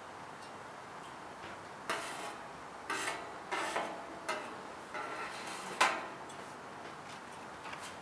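Metal spoon scraping and clinking against a small aluminium vaporizer pan and a sheet-metal tray as oxalic acid crystals are spooned in: about half a dozen short scrapes and taps between two and six seconds in.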